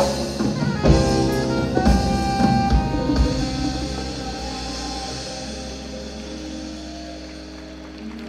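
Live jazz-funk band of saxophone, electric bass, keyboards and drum kit playing a few sharp accented hits together, then letting a final held chord ring out and fade: the close of a number.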